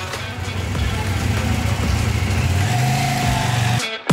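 KTM Duke motorcycle engine running as the bike rides off at low speed, its pitch stepping up about two-thirds of the way through; the sound cuts off suddenly just before the end.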